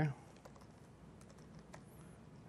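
Faint, irregular key clicks of typing on an Apple laptop keyboard.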